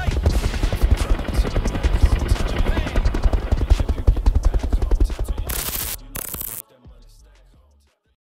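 Helicopter rotor blades chopping in rapid heavy thuds, mixed with the song's closing beat. Two short loud hissing bursts come about five and a half and six seconds in, and the sound then fades away.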